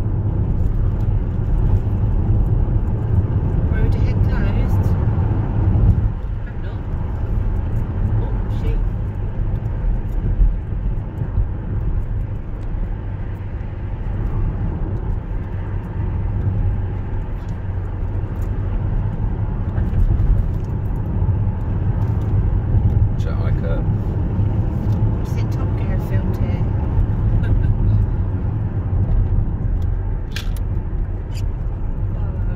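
Steady low rumble of a car's engine and tyres heard from inside the cabin while driving, easing slightly about six seconds in.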